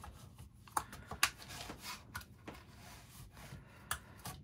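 Gloved hands handling a tape measure on the plastic back of a Starlink dish: faint rubbing and sliding with a few light clicks and taps.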